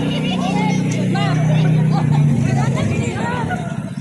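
People's voices talking, over a steady low hum that drops slightly in pitch about two seconds in.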